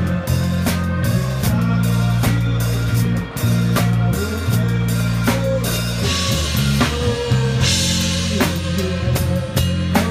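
Live band playing: a drum kit keeps a steady beat of kick and snare hits under sustained bass notes and guitar, with cymbal crashes washing in about six and eight seconds in.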